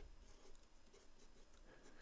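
Very faint short strokes of a marker pen writing letters on paper.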